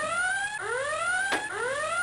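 Whooping alarm sound effect: a rising tone that repeats about every 0.8 seconds, a starship-style red alert sounding during an attack.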